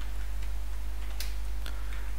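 A few faint, separate computer keyboard keystroke clicks in the second half, over a steady low hum.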